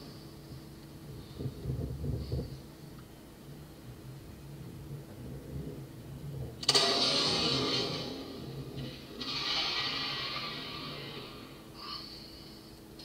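A single .300 Win Mag rifle shot about two-thirds of the way in: a sudden sharp report that trails off into a long rumble, which swells again a couple of seconds later. It is heard muffled and with an added echo, as a re-recording played through a computer speaker.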